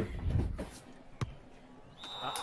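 A single short, sharp click about a second in, after a faint low rumble that dies away; otherwise a quiet room.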